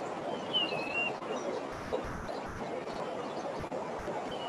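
Outdoor field-recording ambience with a steady background hiss and rumble. A bird gives a few short whistled chirps in the first second, and there are a few low bumps later on.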